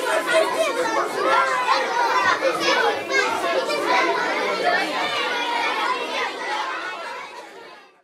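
A crowd of young children chattering and calling out all at once, many high voices overlapping, fading out over the last second or two.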